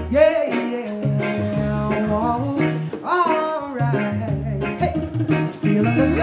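A live reggae band plays with electric bass, drum kit, electric guitars and keyboard over a steady beat. Wordless sung phrases slide over the band near the start, again about halfway through, and at the end.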